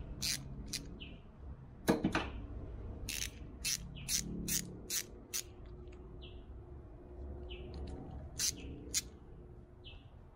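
Sharp metallic clicks and knocks of pliers and a just-removed outboard internal anode on its bolt being handled, with one louder knock about two seconds in and a quick run of clicks from about three to five and a half seconds. Short high bird chirps recur in the background.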